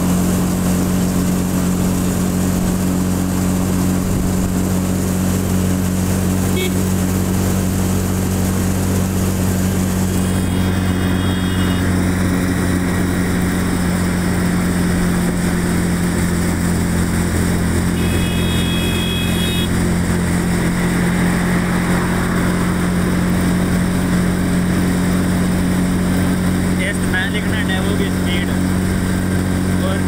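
A vehicle engine running steadily with a constant low hum, with a brief high tone twice, once about a third of the way in and again past halfway.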